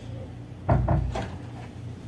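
Two taps on a phone's touchscreen keypad while digits are entered into an automated banking call. The first tap is a loud thump and the second a lighter click about half a second later, over a steady low hum.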